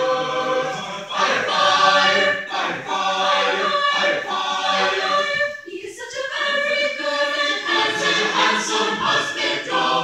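Mixed-voice high-school chamber choir singing, with a brief break in the sound about six seconds in before the singing resumes.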